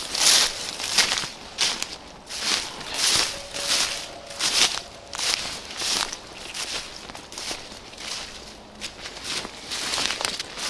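Footsteps of a person walking through tall grass and undergrowth, vegetation rustling and brushing with each step, about one to two steps a second.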